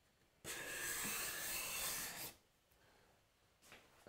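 Steel card scraper pushed along a wooden board in one stroke of about two seconds, a steady shearing hiss as its freshly burnished burr cuts fluffy shavings with little effort.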